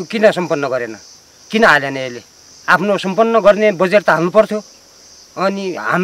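Insects droning steadily at a high pitch behind a man's talking, which comes in short phrases with brief pauses.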